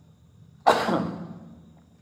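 A single cough, sudden and loud, trailing off over about a second.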